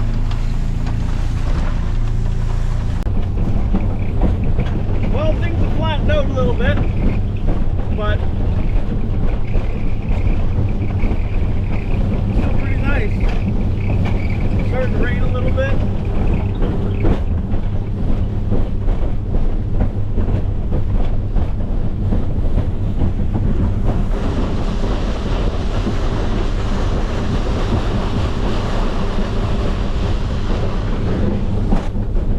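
A motorboat's engine running steadily under way, with the rush of water and wind buffeting the microphone.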